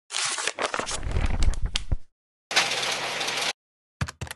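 Newspaper paper rustling and crumpling for about two seconds, full of sharp crackles. After a short gap comes a second, steadier rush of paper noise lasting about a second.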